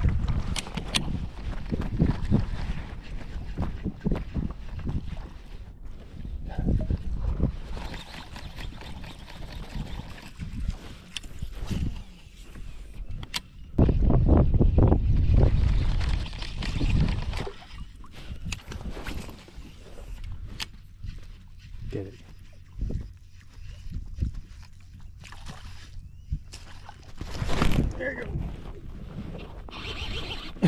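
Wind buffeting the microphone in uneven low gusts, the strongest about halfway through, with water lapping at a fishing kayak's hull and small clicks from reel handling.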